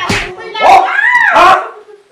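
Loud, strained cries from a person being struck, broken by about three sharp slapping hits, in a staged beating scene.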